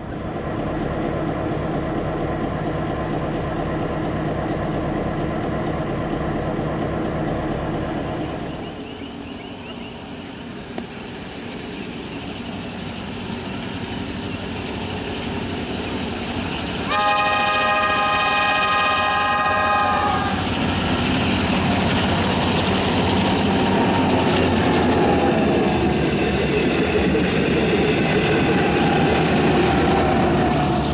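First an engine idling with a steady fast beat. Then a V/Line P-class diesel locomotive approaches, sounds its multi-note horn for about three seconds, and passes close by with its diesel engine and wheels running loud, the pitch sliding down as it goes by.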